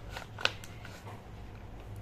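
A small paper seed packet being worked open by hand, with a few short crinkles of paper and one sharp crackle about half a second in, over a faint steady low hum.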